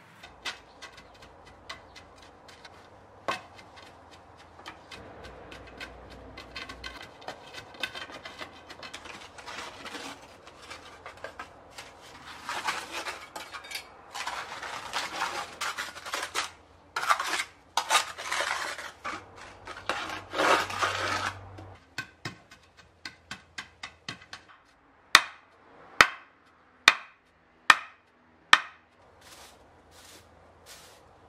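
Dry decomposed-granite soil being poured and scraped with a steel trowel over old clay roof tiles set on edge, a gritty scraping with small clinks of grit and metal on tile. Near the end come five sharp knocks about a second apart.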